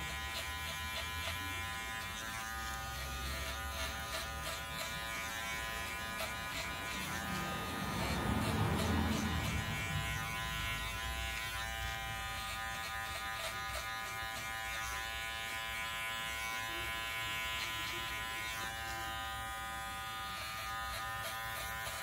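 Electric hair clipper running with a steady buzz as it cuts short hair at the sides and back of the head in a fade. The buzz swells louder for a couple of seconds about eight seconds in.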